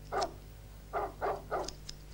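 A dog barking: a run of short, separate barks, about four of them, fainter than the narration around them.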